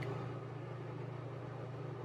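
An electric fan running steadily: a low, even hum under a hiss of moving air.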